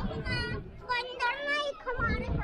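Children's voices close by: high-pitched chatter and calling out.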